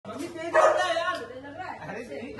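People's voices talking loudly, with a raised, exclaiming voice about half a second in.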